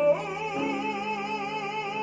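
A male classical singer holds one long, high note with a wide vibrato, accompanied by piano chords underneath.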